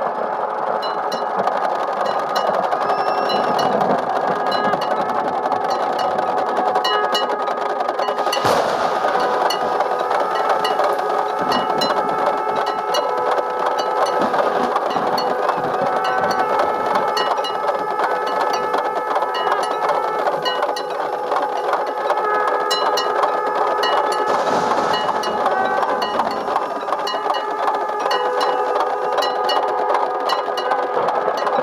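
Many conch shells blown together in long, overlapping held notes, with hand cymbals clashing in a steady beat over them.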